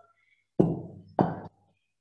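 Two knocks about half a second apart: a wooden rolling pin knocking against a stone countertop as dough is rolled out.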